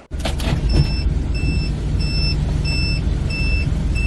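A vehicle's electronic warning beeper sounding over and over, about three beeps every two seconds, over the low rumble of an idling engine.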